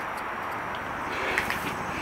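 Steady background hum with a few light clicks and rubs of clear plastic tubing and a PVC cap being handled.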